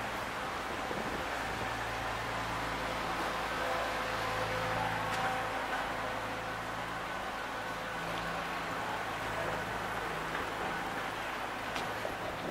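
Steady street traffic noise with a low, even machine hum and a few faint steady whining tones.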